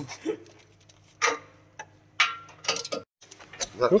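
Scattered light clicks and knocks of metal parts being handled while a chain trencher is unpacked from its wooden crate.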